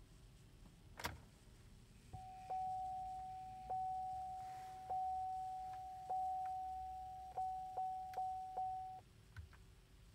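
Dashboard warning chime of a 2011 Chevy Equinox sounding as the ignition is switched on: one steady pitched tone restruck about every second, then four quicker strikes near the end, after a single click about a second in. No starter click and no cranking follow: the engine will not turn over, a fault later traced to a frozen, defective replacement battery.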